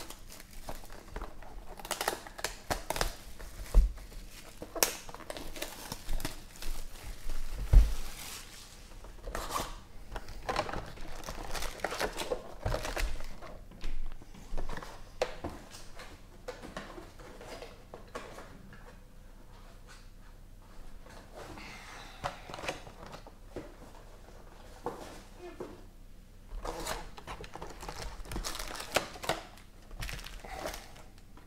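Cellophane shrink wrap crinkling and tearing off a trading-card hobby box, then foil card packs rustling and sliding as they are handled and stacked. Two sharp knocks in the first eight seconds, with a quieter stretch midway.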